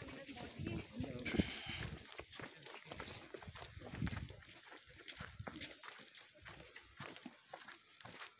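Indistinct voices of people nearby, loudest in the first two seconds, with crunching footsteps on packed snow throughout.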